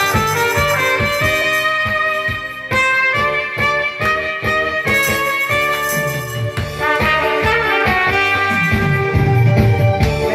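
Live band music with a trumpet playing over a steady beat.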